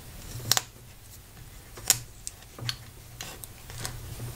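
Fountain pens being handled on a paper-covered desk: a few light clicks and taps of pen barrels, the sharpest about half a second in and just before two seconds.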